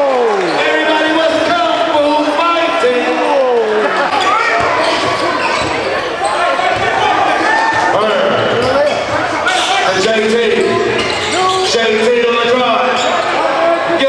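A basketball being dribbled on a gym court while many voices from the crowd and players shout and call out over each other, echoing in the gym.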